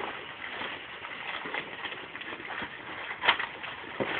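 Hands rummaging in a cardboard shipping box: rustling with scattered light knocks, as wooden briar blocks are handled, and one sharper knock a little past three seconds in.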